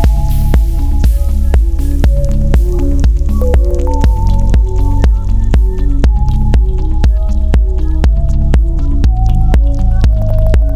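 Electronic dance music on Moog synthesizer: a steady kick drum about twice a second drives a rolling synth bass, with a stepping synth melody above it.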